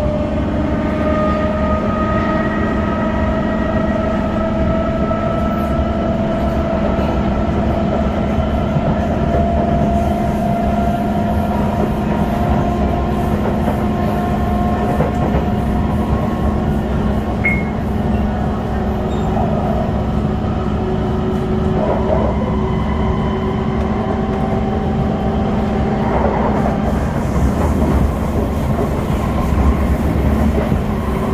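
Kawasaki Heavy Industries C151 metro train heard from inside the car while running along the line: a steady low rumble of wheels on rail, under a motor whine that climbs slowly in pitch over the first ten seconds or so and then holds steady.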